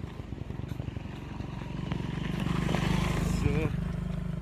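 Motorcycle engine coming up from behind, growing louder as it nears and loudest about three seconds in.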